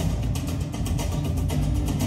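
Music with a steady, quick drum beat over a strong bass line.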